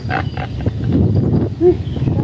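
A man laughing hard in rough, throaty bursts.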